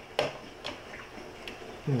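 A few light clicks and taps from handling a 1967 Mustang instrument cluster housing and its wiring with a screwdriver. The first click, just after the start, is the sharpest; three fainter ones follow about half a second apart.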